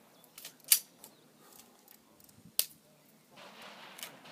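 Two sharp clicks against a low background: the louder one about three-quarters of a second in, the second a little before the end, with a few fainter ticks between.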